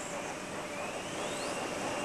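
Steady rushing noise, with a faint whistle that rises in pitch through the middle.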